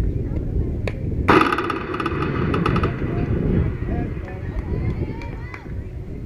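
A sharp metallic ping about a second in, ringing on for over a second: a metal softball bat striking the pitched ball. Voices of players and spectators carry on around it.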